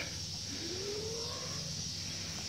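Steady high-pitched insect chirring, typical of crickets, over a low background hum, with a faint tone that rises slowly about half a second in.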